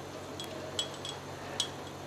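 A few short, high, ringing ticks, four of them at uneven intervals, over a steady low room hum.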